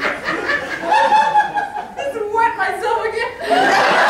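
Live laughter in pulsing bursts, then an audience breaking into applause about three and a half seconds in, marking the end of a scene.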